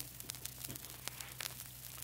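Surface noise of a 1938 aluminum-based lacquer disc field recording: steady hiss and a low hum, with scattered clicks and crackles.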